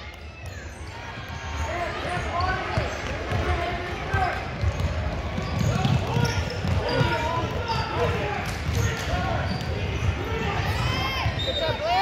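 Basketball being dribbled on a hardwood gym floor, with players' running feet and indistinct voices of players and spectators echoing in a large gym.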